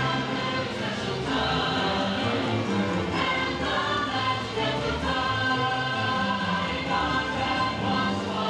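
Christmas parade soundtrack music with a choir singing held notes.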